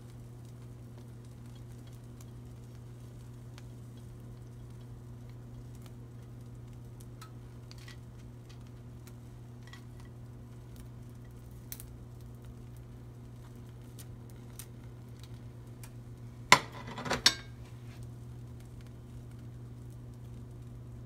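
Kitchenware clatter over a low steady hum: faint small clicks as chopped peppers are scraped off a plate into a nonstick frying pan, then, about three-quarters of the way through, two sharp loud clatters close together.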